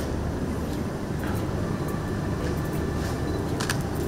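Steady low room rumble with a few sharp camera-shutter clicks: one about a second in and two in quick succession near the end.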